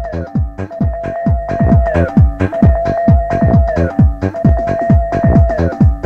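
Electronic dance music from a club DJ set, taped on cassette: a steady kick drum whose hits drop in pitch, under a held synth tone and short repeating downward swoops.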